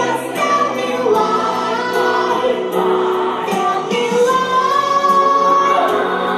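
A young girl singing a pop ballad into a microphone over musical accompaniment, holding a long note from about four seconds in.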